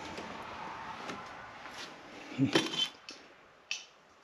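Porcelain figurines and broken ceramic pieces being handled on a wooden shelf: a clatter about two and a half seconds in and a sharp clink near the end.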